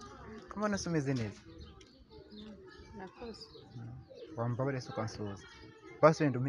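Two people talking in short phrases with pauses between them.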